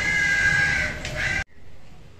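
A crow cawing, one longer harsh call followed by a short one, over a low background rumble; the sound cuts off abruptly about one and a half seconds in.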